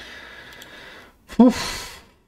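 A man's short voiced grunt about one and a half seconds in, followed by a breathy exhale: the start of a chuckle.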